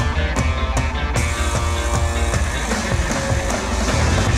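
Rock music with a steady drum beat. About a second in it fills out into a denser, brighter wash of sound.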